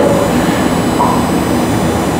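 A steady, fairly loud rushing rumble of background noise, with faint steady high tones above it.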